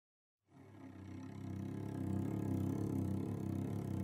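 Low rumbling drone of an intro sound effect, fading in about half a second in and swelling steadily louder.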